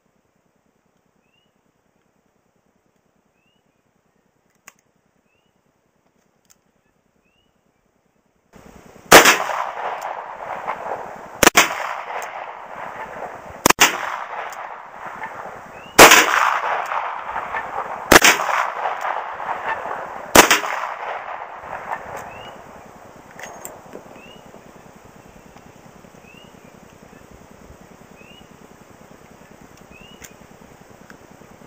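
Six single shots from a Smith & Wesson L-frame .357 Magnum revolver firing .38 Special wadcutter reloads, fired slowly about two seconds apart, each trailing off in echo. The first eight seconds or so are near silence.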